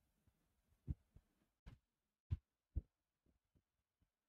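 Faint, irregular soft clicks and thumps, about seven over three seconds, from someone handling a computer at a desk.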